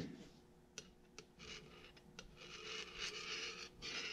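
Faint handling noise: a few light clicks and two stretches of soft rubbing and scraping as a steel pin and an oil can are handled on a workbench.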